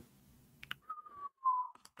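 A person whistling two short notes, the second a little lower and sliding down, with a few faint clicks before and after.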